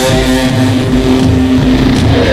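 Distorted electric guitar holding one sustained note over a low bass rumble, while the drums drop out.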